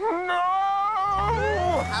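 A long, wavering wailing cry in a cartoon voice. About a second in, a car engine starts up underneath it as the police car pulls away.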